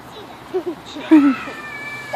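A small child's short high vocal squeaks: two quick ones, then a louder falling one about a second in. A faint steady high tone sounds behind them.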